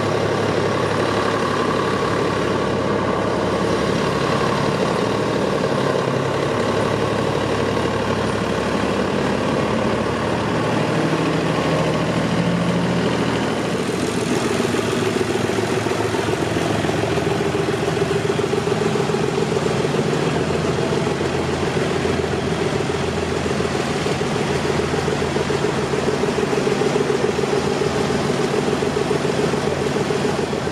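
Farm tractor diesel engines running at low revs in a slow parade, a steady throbbing hum throughout. About halfway through the engine note changes as a closer tractor, a Fiat 570, takes over.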